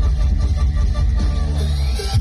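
Loud live Thai mor lam band music played through a big stage PA, with a heavy bass line and a rising sweep near the end.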